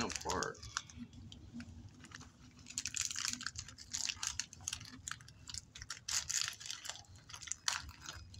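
A person chewing a crunchy snack: clusters of sharp, crackly crunches through most of the clip, after a short hummed 'mm' at the start.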